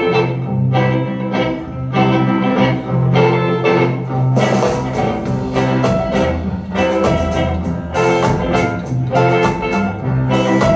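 Live ska and rhythm-and-blues band playing: electric guitars, saxophone, double bass and drum kit in a rhythmic, chord-driven groove. The drums come in stronger about seven seconds in.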